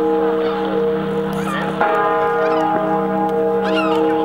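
The great bourdon bell of Notre-Dame de la Garde tolling, its deep hum ringing on with a fresh strike about two seconds in. Gulls give short calls over it, the clearest near the end.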